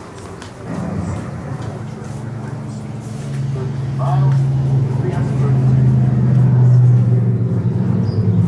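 A low, steady droning hum, like a motor, that comes in about a second in and grows louder, with faint indistinct voices.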